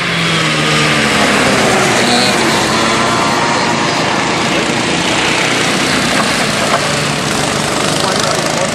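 A group of Honda cadet karts with small four-stroke engines passing at speed, a steady high-revving engine note. The engine pitch falls as the leading karts go by in the first second or so.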